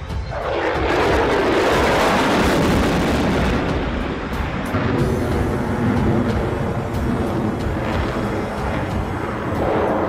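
F-35A fighter jet's engine noise as it flies past: a loud, even rush that swells about half a second in, stays strong and swells again near the end. Background music with a steady beat plays under it.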